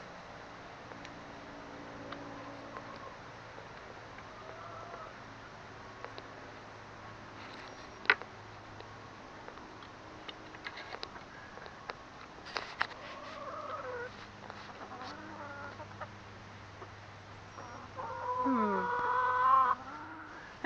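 A flock of hens clucking quietly as they are herded toward the coop, with a couple of sharp clicks in the middle and a louder, drawn-out call near the end.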